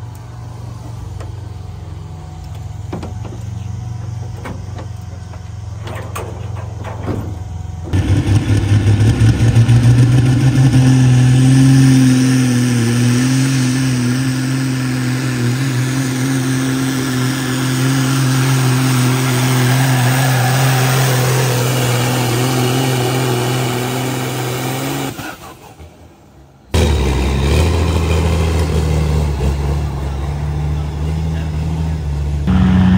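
Big-rig diesel engine idling under an open hood. About eight seconds in it gives way to a semi truck's diesel at full throttle under load pulling the sled: a loud, steady, deep engine note with a faint high whine. That note holds until it breaks off suddenly about 25 seconds in, and a second truck's engine is then heard running.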